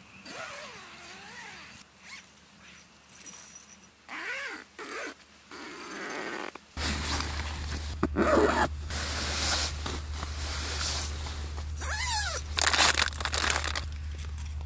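A cat meowing several times: faint at first, a clearer meow about four seconds in, and a loud falling meow near the end. In the second half there is a low steady hum, and nylon tent fabric and a sleeping bag rustle.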